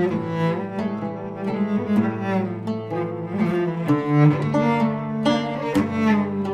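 Cello and oud duet playing a Turkish oyun havası (dance tune) in makam Nihavend. Held and moving bowed cello notes run over quick plucked oud notes.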